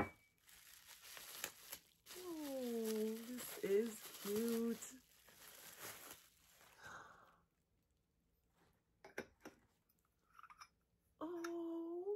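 Paper crinkling and tearing as a small gift is unwrapped, with a long falling 'ooh' from a woman's voice partway through. The rustling stops after about seven seconds, a few light clicks follow, and another drawn-out 'ooh' comes near the end.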